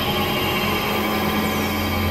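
Experimental electronic synthesizer drone: a steady low drone under a dense, noisy wash with thin held high tones, and a few quick falling glides high up near the end.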